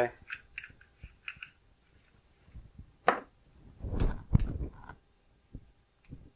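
Metal lightsaber hilt being handled and opened: light metallic clicks and ticks in the first second and a half, then a sharp click, and about four seconds in a thump followed by more sharp clicks.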